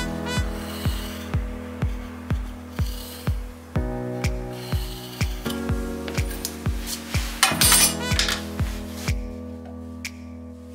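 Background electronic music with a steady kick-drum beat about two a second, the beat stopping near the end. Brief scratchy rubbing sounds come over it, loudest about eight seconds in, from a pencil being drawn along a steel rule on the wooden board.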